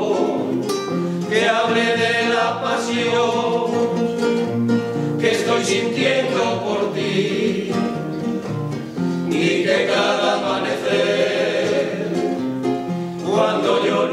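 Male vocal group singing a bolero in harmony, accompanied by two acoustic guitars.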